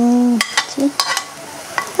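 Sliced onions, garlic and green chillies sizzling as they fry in hot oil in a pot, with a spoon clicking and scraping against the pot as ginger is tipped in and stirred. A short steady pitched note, like a hum, sounds in the first half-second.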